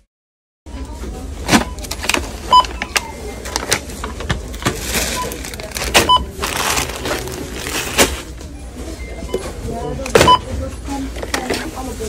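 Self-checkout barcode scanner giving about four short, high beeps as groceries are scanned, over handling clicks and store background noise.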